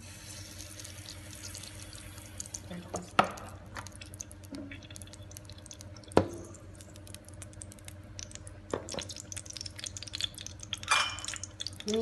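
Cooking oil heating in a wok, with faint scattered crackles throughout and a louder burst of crackling near the end. A couple of sharp clicks, about three and six seconds in, stand out above the crackle.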